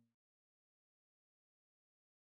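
Near silence: the audio track drops to dead digital silence.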